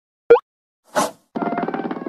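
Cartoon sound effects: a quick pop that slides in pitch about a third of a second in, then a short whoosh about a second in. Orchestral cartoon music starts just before the end, with plucked notes over held tones.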